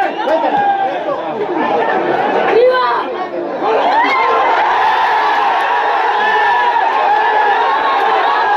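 Football stadium crowd: many voices shouting and chattering at once, swelling into a denser, steadier din about four seconds in.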